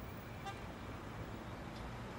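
Steady low background rumble, with one short high beep about a quarter of the way in.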